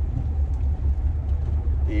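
Steady low rumble of a car in motion, heard from inside the cabin: engine and road noise.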